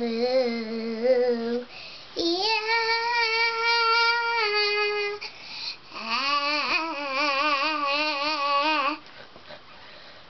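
A young girl singing unaccompanied, drawing out three long, wavering notes: a short one, then a long, higher note that steps down near its end, then another with a wobbling pitch that stops about a second before the end.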